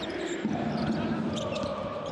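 Basketball arena ambience: a steady crowd hum with a basketball being dribbled on the hardwood court.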